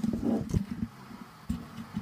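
Microphone handling noise, as the mic is held against the chest to try to pick up a heartbeat: a muffled low rumble with two soft thumps about a second apart. No heartbeat comes through.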